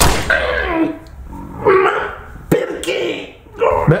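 A person's voice making short sounds without clear words, in about four brief bursts.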